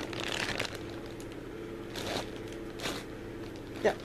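A bag being handled, rustling and crinkling in short bursts: at the start, about two seconds in and again about a second later, over a steady low hum.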